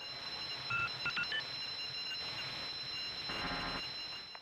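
Electronic sound effect for a production-company logo: a steady high, ringing tone held throughout, with a few quick pitched beeps about a second in.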